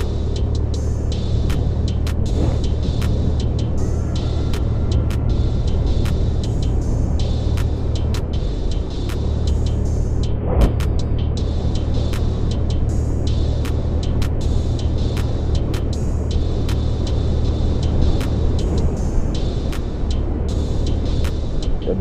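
Suzuki Access 125 scooter's single-cylinder engine running steadily under way, a low hum under road and wind noise. Frequent short sharp clicks sound throughout.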